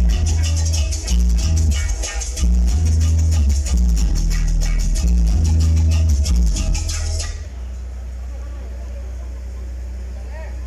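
Loud dance music with a heavy pulsing bass line and fast shaker-like percussion, played through a large mobile-disco sound system being tested. About seven seconds in the music cuts off suddenly, leaving only a steady low bass drone.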